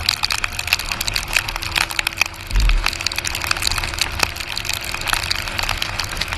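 Raindrops ticking irregularly against the camera's microphone on a motorcycle riding in heavy rain, over steady wind and road noise with a faint even hum. A low thump about two and a half seconds in.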